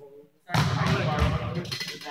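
Young men laughing loudly together, with some short spoken exclamations.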